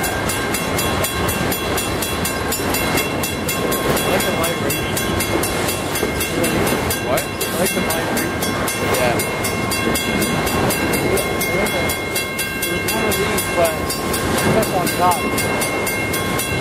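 Freight train of autorack cars rolling past at speed: a steady rumble and rattle of steel wheels on the rails, with a fast regular ticking and a faint steady high ringing over it.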